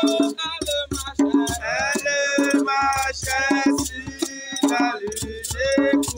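A voice singing phrases into a microphone over a steady beat of hand drums and a rattle.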